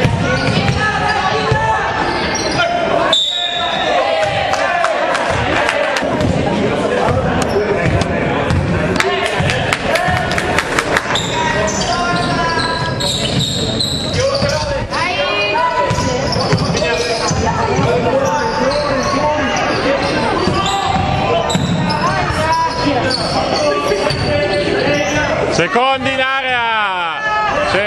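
Basketball game on a wooden gym floor: the ball bouncing, sneakers squeaking and players and spectators calling out, echoing in the hall.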